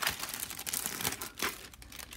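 Clear plastic sleeve of a sticker pack crinkling as it is opened and pulled apart, strongest in the first second and a half, then fading to faint rustles.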